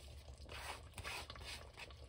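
Chicken and yoghurt gravy simmering in an open pressure cooker, giving faint, irregular soft crackling and bubbling.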